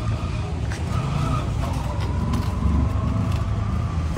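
A steady low rumble of a motor vehicle.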